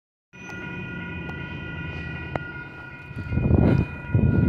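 Distant locomotive horn sounding one long, steady chord as the train approaches the crossing. About three seconds in, a louder low rumble builds up under it.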